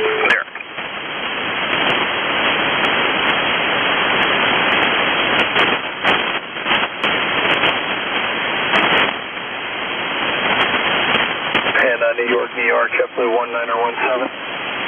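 Shortwave single-sideband receiver tuned to an HF aeronautical voice channel, giving a loud, steady hiss of band noise between transmissions, cut off above about 3.5 kHz by the receiver's filter. The noise flickers and dips in the middle, and a radio voice comes in near the end.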